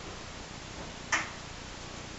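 A single short, sharp click a little over a second in as a piece of cinnamon-roll dough is set into a cast-iron skillet, over a steady low hiss.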